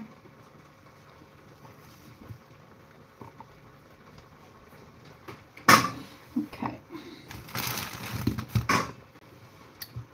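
Faint kitchen room tone, then about six seconds in a sharp knock and a few smaller clatters as a kitchen drawer is opened, followed by about a second and a half of metal utensils rattling as they are rummaged through.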